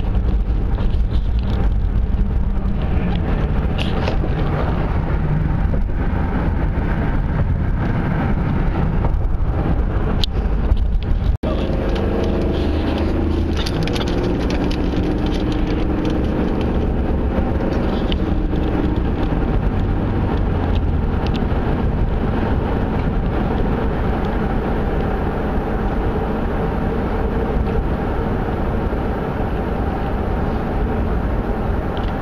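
Steady road noise inside a moving car, the engine and tyres running continuously at cruising speed. There are a few light ticks in the first third, and the sound drops out for an instant about eleven seconds in, where the recording is cut.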